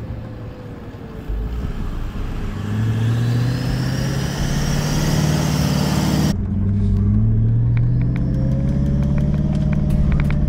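Diesel engine of a Toyota LandCruiser towing a caravan through soft sand, worked hard under load with its pitch climbing steadily as it pushes up the dune. About six seconds in, the sound switches to inside the cabin, where the engine note is fuller and keeps rising.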